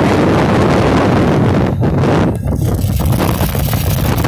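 Wind rushing over a phone microphone carried on a moving vehicle, a loud, dense rush with steady low road and engine rumble beneath. It thins briefly a little over two seconds in.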